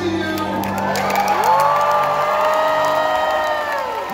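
Several voices sliding up into long held notes that end together near the end, over a steady low sustained tone, with cheering and a few claps.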